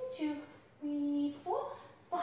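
A woman's voice singing a few long held notes, with a step up in pitch about three quarters of the way through.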